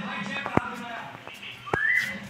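A short whistled note rising in pitch near the end, after two sharp clicks, with faint voices in the background.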